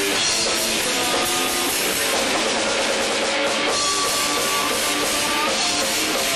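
Live rock band playing loud, with electric guitar and a drum kit. The sound is steady and dense but thin, with little bass.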